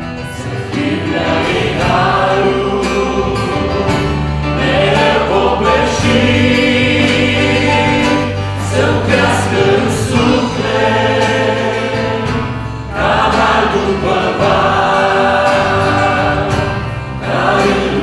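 A worship band playing a gospel song: a woman's lead voice with men's voices singing along, over acoustic guitar and bass guitar. The sung phrases break off briefly about every four seconds.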